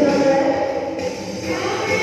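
A group of voices singing a Tamil Vacation Bible School action song together, with music.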